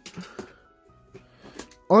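A few light clicks and taps of plastic toys being handled on a wooden table, over faint steady tones.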